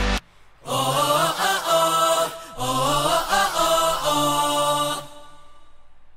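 Male vocal group singing a drawn-out, repeated "oh oh oh" refrain with the beat dropped out. It ends about five seconds in, trailing off into a faint fading tail.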